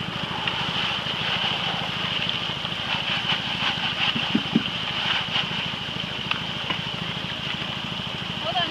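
Water gushing steadily through a Gold Hog highbanker sluice over the throb of its small pump engine, with gravel clattering into the hopper as a bucket is emptied about halfway through.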